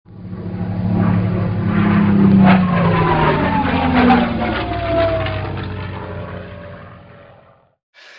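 Propeller airplane flying past: the engine sound swells in over the first second, its pitch falls as it goes by, and it fades away near the end.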